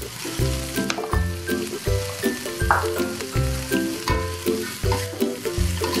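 Julienned carrots and sliced onion sizzling as they are stir-fried in a wok, with a metal spatula scraping and clicking against the pan. Background music with a steady bass beat plays over it.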